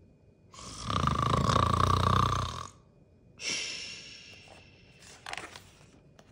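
A man voicing an exaggerated cartoon snore aloud: one long, loud rasping snore, then a shorter, breathier one that fades away.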